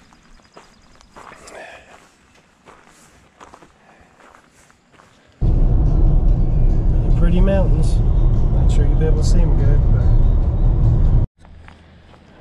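A car driving on an open road, heard from inside the cabin: a loud, steady low road-and-engine rumble that starts suddenly about five seconds in and cuts off abruptly about a second before the end. Before it there are only faint outdoor sounds.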